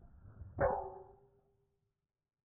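Golf driver swung into a ball off a range mat: a faint swish, then a sharp metallic crack about half a second in, with a ringing tone that fades over about a second.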